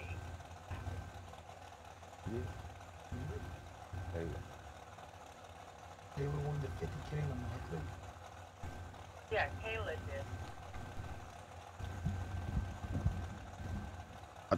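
Dragster engines idling in the lanes, a low, uneven rumble heard faintly, with faint voices in the background.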